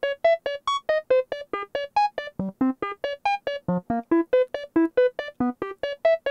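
Analog modular synthesizer playing a fast sequence of short, plucked notes, about five a second and changing in pitch, run through a Doepfer A-188-2 bucket-brigade (BBD) delay module with its BBD level turned all the way up.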